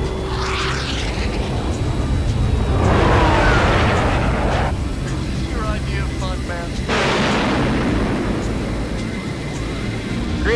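Fighter-jet engine roar from a film soundtrack, surging loudly three times: about half a second in, for about two seconds from three seconds in, and again at about seven seconds, over a steady low rumble.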